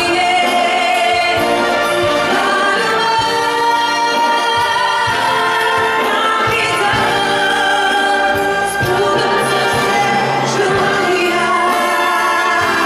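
A woman singing with a live symphony orchestra, her voice amplified through the hall's microphone and speakers, holding long notes over the strings.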